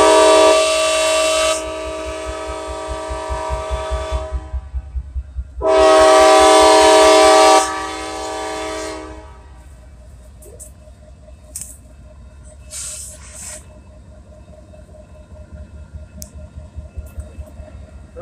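Diesel freight locomotive's multi-chime air horn sounding two long blasts, a several-note chord, as the train nears a grade crossing. After the horn stops, a bell keeps ringing faintly over the low rumble of the train.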